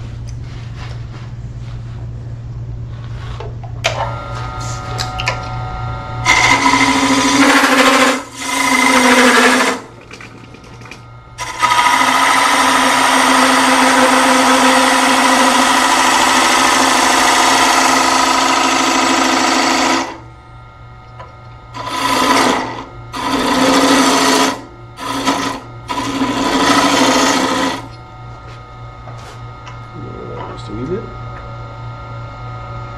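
Wood lathe spinning a dry cedar block while a hand-held turning tool cuts into it, over the lathe's steady low hum. The cutting comes in bursts: two short cuts, then one long cut of about eight seconds in the middle, then four more short cuts near the end.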